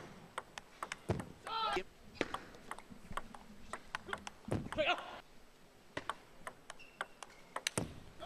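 Table tennis rally: the ball clicks sharply off the bats and the table in quick, uneven succession. A voice breaks in briefly twice, about one and a half seconds in and again just before five seconds in.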